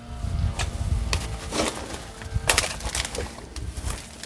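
Camera-handling and movement noise: a low rumble, likely wind or handling on the microphone, with a few short crunches or knocks, such as footsteps on the dirt and debris, as the camera is carried and turned.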